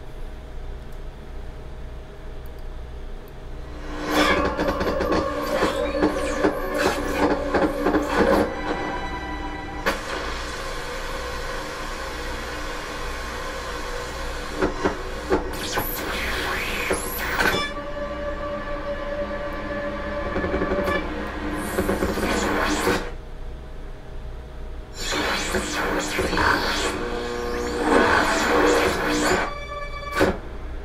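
An electroacoustic composition played back over loudspeakers: dense blocks of noisy texture threaded with sustained tones. The blocks start about four seconds in and stop and restart several times, with short gaps where only a low hum remains.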